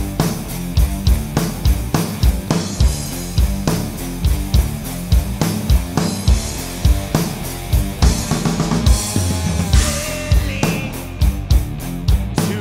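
Drum kit, Pearl drums with Zildjian cymbals, played live along to a heavy rock band recording with distorted electric guitar, in a 6/8 triplet feel. Bass drum and snare hits fall in a steady repeating pattern, and a burst of fast strokes comes near the end.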